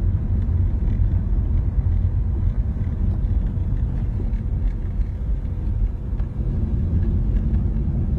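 Steady low rumble of road and engine noise inside a moving car's cabin.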